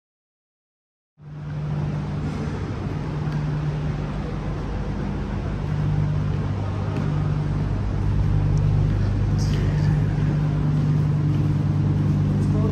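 Silence for about a second, then a steady low hum of road traffic and idling cars.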